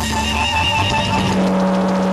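Live rock band with distorted electric guitar: held, ringing notes rather than a beat, with a long low note sustained from about halfway through.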